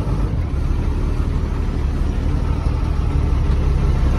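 Tata truck's diesel engine running steadily under way, heard loud and low inside the cab, which sits right on top of the engine.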